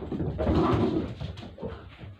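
A dog's paws thudding and scrambling on a carpeted floor as it dashes after a thrown toy. The sound is loudest for about a second near the middle.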